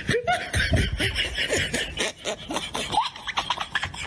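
People laughing in short, repeated bursts.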